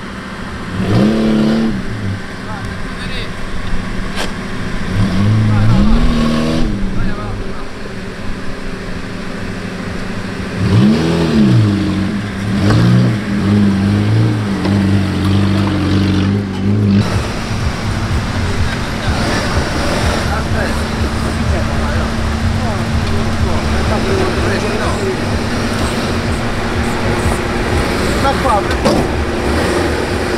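Fiat Panda 4x4's small engine revved up and down in repeated short bursts as it crawls up a muddy, rutted trail, then running more steadily under load.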